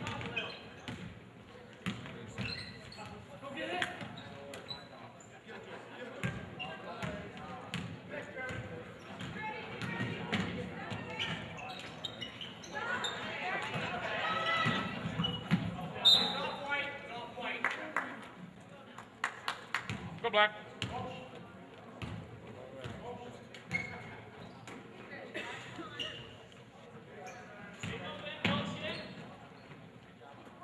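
Basketball game in a school gym: a basketball bouncing on the hardwood court among voices and shouts from spectators and players. The shouting swells about thirteen seconds in, and a sharp blast, typical of a referee's whistle, comes about sixteen seconds in as the referee stops play.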